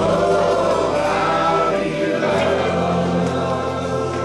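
Live contemporary worship band playing: several voices singing together in sustained lines over acoustic guitars, electric bass and keyboard, the bass moving to a new held note about two seconds in.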